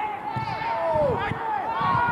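Several footballers shouting calls to each other, their voices overlapping, with a few dull low thumps underneath.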